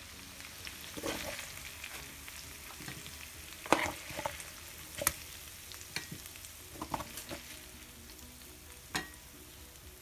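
Chicken wings sizzling in hot oil in a frying pan while they are lifted out with a metal slotted spoon, with several sharp clinks of the spoon against the pan and plate, the loudest a little under four seconds in.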